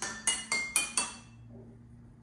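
Water-filled drinking glasses tuned to a G major scale, struck with a wooden chopstick: five quick clinking notes about four a second, stepping up in pitch, each ringing briefly and dying away a little over a second in.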